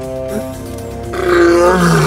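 Lion roaring once, a rough snarl lasting about a second and starting about a second in, over background music of sustained chords.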